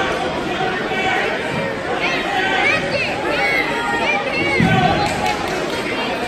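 Crowd babble: many voices talking and calling at once, none of them clearly in front.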